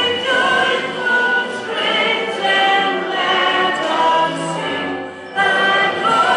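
A crowd singing together in slow, held notes, with backing music.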